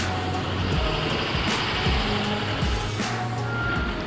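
School bus engine running, with background music over it. A steady high-pitched beep starts near the end, like a vehicle's reversing alarm.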